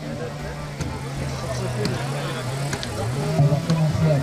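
A chainsaw running steadily as it cuts into the felling notch of a standing pine, its engine speeding up about three seconds in, with people talking in the background.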